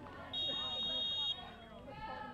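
A referee's whistle blown once: a single steady, high-pitched blast of about a second, over background voices from the crowd and sideline.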